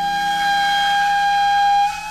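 Music: a shinobue (Japanese bamboo transverse flute) holds one long, breathy high note over a softer sustained lower background. The note stops just before the end.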